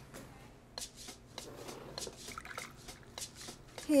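Footsteps on a hard diner floor: a quiet run of light taps, about two or three a second, over faint room tone.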